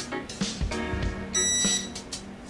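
Background music, with one short high electronic beep about one and a half seconds in from the Phrozen Sonic Mini 4K resin 3D printer's buzzer as it finishes booting to its main menu.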